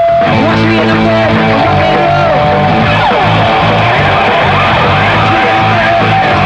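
Rock band playing live and loud through an instrumental passage: electric guitar notes bending up and down over bass and drums.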